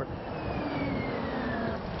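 Rosenbauer RT all-electric fire truck driving close by on asphalt: tyre and road noise with a thin electric-drive whine that falls slowly and steadily in pitch.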